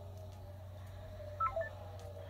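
A short electronic chime of two or three quick notes, stepping down in pitch about one and a half seconds in, typical of a voice-call app's tone as someone leaves the call. Underneath runs the faint, steady drone of race-truck engines from the TV broadcast.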